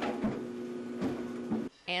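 Wool dryer balls tumbling in a running clothes dryer, thumping against the drum three times over a steady hum and rush; fairly loud. The sound cuts off shortly before the end.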